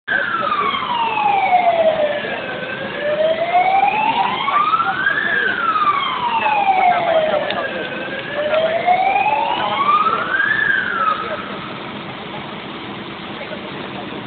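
Fire engine siren in a slow wail, its pitch sweeping down and back up about every five seconds. After two full cycles it cuts off about eleven seconds in.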